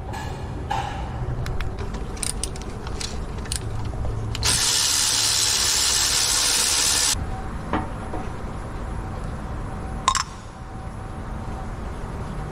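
Cordless electric ratchet with an extension running for about three seconds as it spins a fastener loose, with light clicks and knocks of metal tools before and after it.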